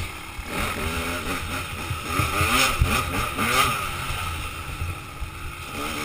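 Dirt bike engine revving, its pitch rising and falling several times as the throttle is worked, over a steady rush of wind and knocks from rough ground.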